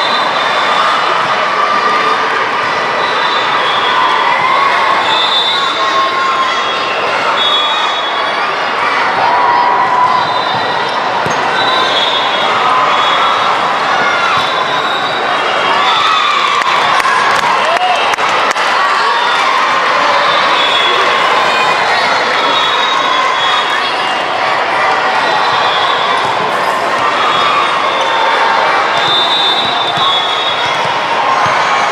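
Loud, constant din of a busy multi-court gym during volleyball play: many overlapping voices and shouts, with the thuds of volleyballs being hit.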